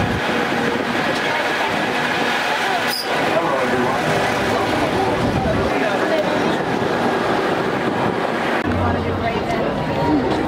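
An open-sided parking tram rolling along, its motor and road noise running steadily under the chatter of riders. A single click comes about three seconds in. Near the end the sound changes to the chatter of a waiting crowd.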